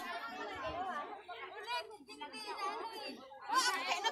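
Several people talking over one another in casual chatter, with a voice growing louder near the end.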